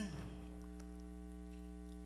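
Steady electrical mains hum, a low buzz with a string of overtones, running unchanged through a pause in a man's speech; the tail of his last word fades out just at the start.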